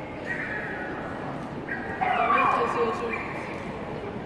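A dog whining and yipping in high-pitched cries: a short whine, then about two seconds in a louder run of yelping whines that slide down in pitch.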